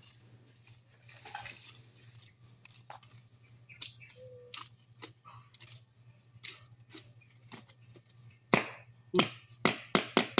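A short-bladed hand tool chopping and scraping into soil and weeds during weeding: irregular sharp strikes, sparse at first, then louder and closer together in the last second and a half.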